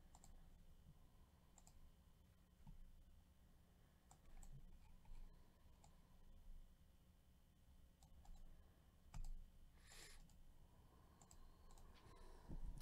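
Faint computer mouse clicks, a dozen or so, scattered irregularly over low room hum, with a brief soft rustle about ten seconds in.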